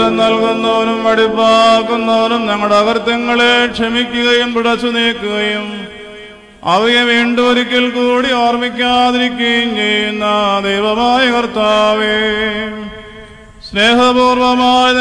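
Syriac liturgical chant: a single voice sings long melodic phrases held mostly on one reciting tone, with ornamented turns. A short break about six and a half seconds in divides it into two phrases.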